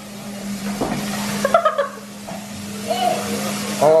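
Bathroom faucet running steadily into the sink, with short bits of voice about a second and a half in and again near the end.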